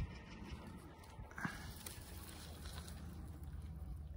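Faint dry rustling and a few soft ticks of wheat ears being brushed by a gloved hand, over a low steady outdoor rumble.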